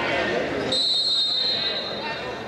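Spectators' voices in a large hall, then about two-thirds of a second in a referee's whistle sounds: one high, steady blast that is strongest for about half a second and then holds on more faintly.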